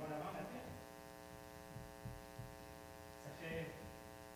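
Steady electrical mains hum, a set of even tones held throughout, with brief speech right at the start and again shortly before the end.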